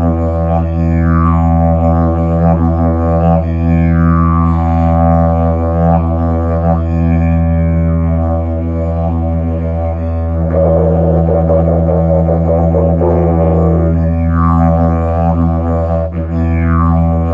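Hemp didgeridoo in the key of E, played as a rhythmic beat: a steady low drone with mouth-shaped sweeps that rise and fall every second or two. From about ten seconds in, a warbling, buzzing passage sits above the drone for a few seconds.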